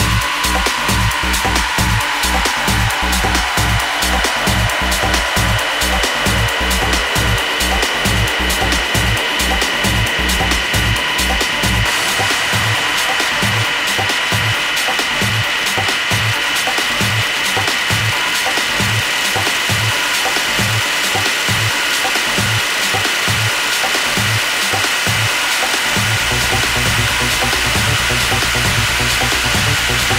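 Hardgroove techno track: a steady four-on-the-floor kick under fast high percussion, with a synth tone sweeping downward over the first several seconds. About 12 seconds in the kick drops out into a breakdown of held high synth tones over the ticking percussion, and a low bass comes back in near the end.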